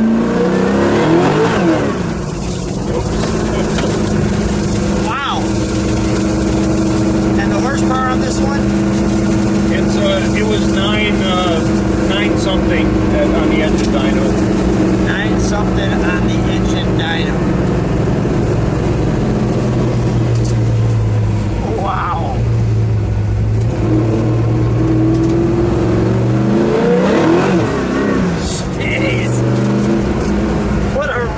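Shafiroff-built 598 cubic inch fuel-injected big-block Chevy V8 with a radical cam, heard from inside the car on the move and held at around 2,500 rpm, as this cam needs. The revs climb near the start, dip about two-thirds of the way through, then climb again near the end.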